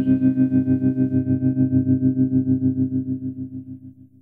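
The final held chord of a song, played on a guitar through effects. It pulses rapidly and evenly, like a tremolo, and fades away to nothing as the song ends.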